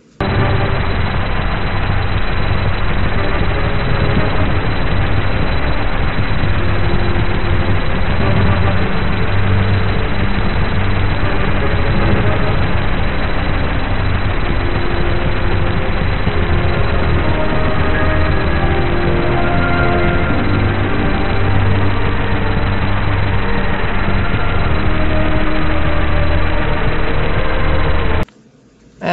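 Playback of a piece of music recovered from a printed and scanned waveform image. The music sits low under heavy, steady noise from the printing and scanning, and sounds dull and muffled. A slight echo comes from adjacent printed lines blending together.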